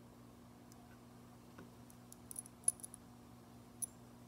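A few small, light metallic clicks as a needle and thread are worked around a metal bolo clip being sewn onto a moose-hide backing, bunched together a little after the middle with one more near the end, over a faint steady low hum.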